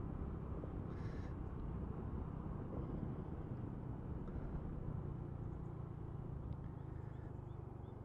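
Honda Wave 125 motorcycle's small single-cylinder engine running steadily at cruising speed, mixed with wind and road noise as it rides along.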